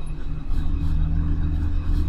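Steady low rumble with a constant hum, background noise picked up by the microphone; no distinct events.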